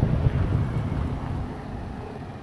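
Wind buffeting the microphone of a moving rider: a gusty low rumble that eases off toward the end.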